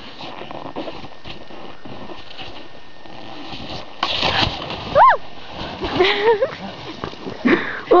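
A snowboard edge scraping and spraying snow: a sudden louder hiss about four seconds in, after a steadier, quieter hiss. About a second later comes a high, rising-and-falling yelp, with more short vocal sounds after it.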